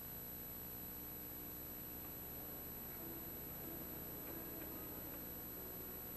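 A steady high-pitched whine and low hum under faint hiss. Soft, sparse music notes fade in about halfway through.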